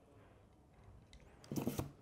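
Faint handling and rubbing of a painted figure part as it is fitted back onto a wire drying peg in a wooden base. About one and a half seconds in comes a short, louder burst: a brief low vocal sound together with a scrape.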